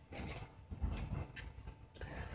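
Quiet handling of folded paper instructions and a small fabric bag: soft rustling with a few light clicks about halfway through.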